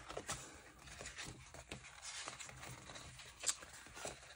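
Faint rustling and light clicks of paper sticker-book pages being handled and turned, with one sharper click about three and a half seconds in.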